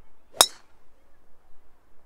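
A golf driver's clubhead striking a teed-up ball: one sharp metallic crack about half a second in, with a brief ring after it. It is a solid strike, a good connection with the driver.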